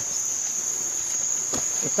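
A steady, high-pitched chorus of night insects, unbroken throughout.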